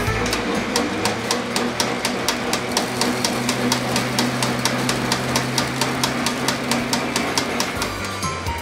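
Model-railroad coal loader running: a steady electric motor hum with fast, even clicking, about five or six clicks a second, as its chute tips coal toward a dump car.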